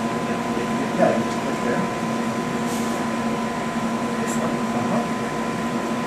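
Steady machine hum of a spectrometer lab's vacuum pumps and ventilation, with a constant high whine over a low drone. Two brief soft hisses come near the middle.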